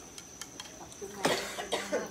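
A person coughing: a sharp cough about a second and a quarter in, and another shorter one near the end.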